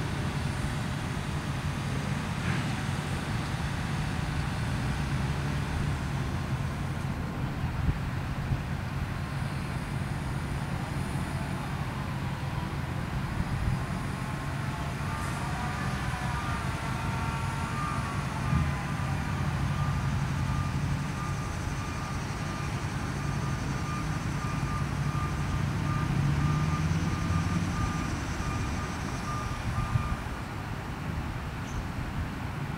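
Grove GMK6300L mobile crane running at a distance, a steady low engine drone, while a high beeping repeats rapidly through the last third.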